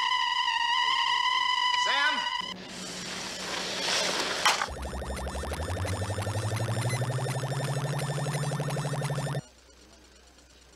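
A steady high electronic tone jams a radio transmission. About two and a half seconds in it gives way to radio static hiss. Then comes a rapid pulsing electronic sound over a low hum that climbs in pitch, the sci-fi robot's sound effect, which cuts off suddenly near the end.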